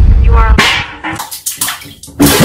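A deep boom under a short rising shout, then water splashing in a bathtub.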